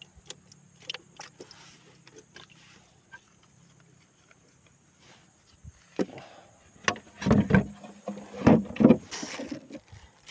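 Handling knocks and clicks in a small canoe: light taps at first, then several heavier thumps against the hull in the second half.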